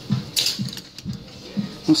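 Plastic or wooden clothes hangers clicking and scraping on a metal clothing rail as garments are handled, in short bursts about half a second and a second in. Behind them, shop music with a beat about twice a second.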